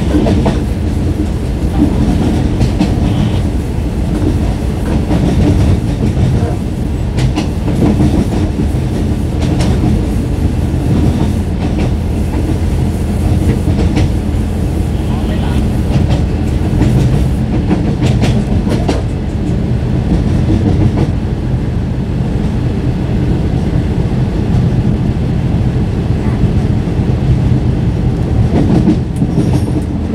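Passenger-train wheels running over the rails at about 45 km/h on a mountain grade, heard from a coach window: a steady low rumble with irregular clacks from the rail joints.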